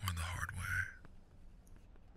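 A man's deep voice speaking softly, close to the microphone, for about the first second.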